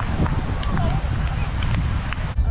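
Wind rumbling on the microphone beside a beach volleyball court, with players' voices calling out and a few sharp taps.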